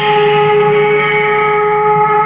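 Harmonium holding a steady sustained note with rich reedy overtones, begun abruptly just before.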